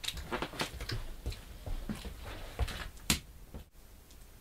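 Foley sounds being performed: a run of irregular soft knocks, scuffs and shuffles, with one sharp crack about three seconds in.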